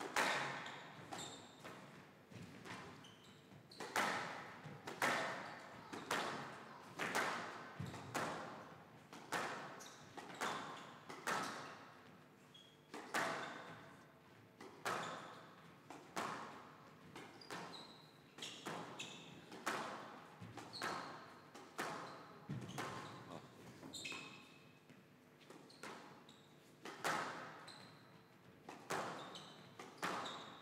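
Squash ball being hit back and forth in a long rally: sharp racket strikes and wall impacts about once a second, each with a short echo off the court and hall.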